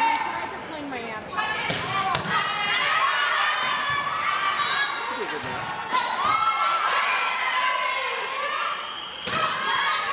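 Volleyball rally in a school gymnasium: players' high-pitched shouts and calls throughout, with several sharp smacks of the ball being struck.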